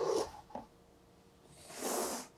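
Cardboard punchboard being gripped and slid against its game box: a short soft scuff at the start, then a soft rustling swell of about a second near the end.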